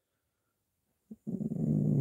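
About a second of silence, then a faint click and a man's low, drawn-out hum, a thoughtful 'mmm' before he answers a question.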